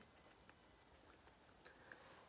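Near silence: room tone, with a few faint, brief ticks.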